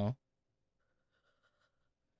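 A man's last spoken word ends right at the start, followed by near silence: quiet room tone with a very faint sound lasting about a second.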